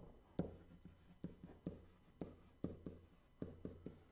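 Stylus writing on a touch surface: faint, quick taps of the pen strokes, about three to four a second.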